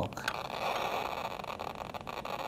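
Technical Associates TBM-3 Geiger counter crackling with a fast, dense, steady stream of clicks while held over the americium source in an ionization smoke detector: a high count rate, "quite a good bit of radioactivity".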